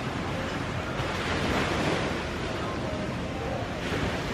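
Steady rushing noise of surf washing on the beach, mixed with wind on the microphone.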